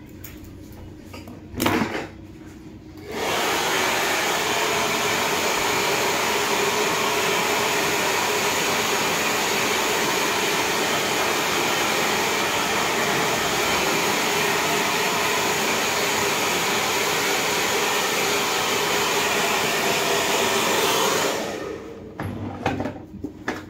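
Handheld hair dryer blowing steadily, switched on about three seconds in and off shortly before the end, drying freshly cut short hair. A brief knock comes just before it starts.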